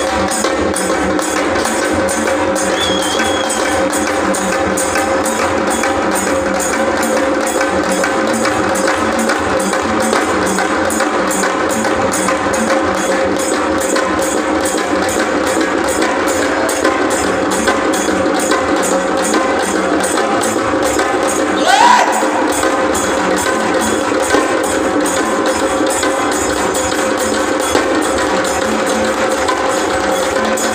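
Live traditional Maharashtrian drumming: a fast, even beat on a halgi frame drum and a dhol barrel drum, over a steady sustained tone. About two-thirds of the way through, a short rising call stands out above the drums.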